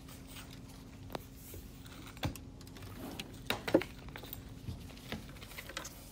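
Irregular light clicks and knocks, the loudest a little past halfway, over a faint steady hum that stops about halfway through.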